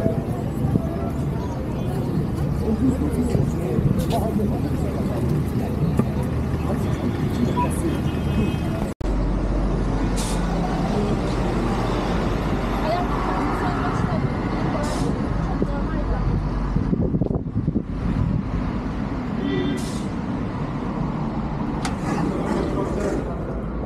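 City street ambience: road traffic and people's voices in the background. The sound breaks off abruptly about nine seconds in, then comes back with a steady low rumble of traffic that fades out about seventeen seconds in.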